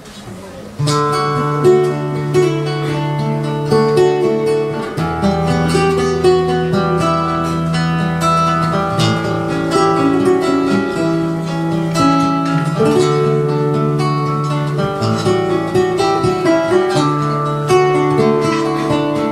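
Two acoustic guitars playing an instrumental introduction together, fingerpicked chords over a bass line, starting about a second in and changing chords every few seconds.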